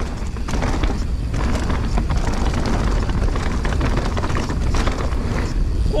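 2021 Marin Alpine Trail XR mountain bike rolling fast down a dirt singletrack: Maxxis Assegai tyres on dirt under a steady rush of wind on the camera's microphone, with small scattered knocks from the trail.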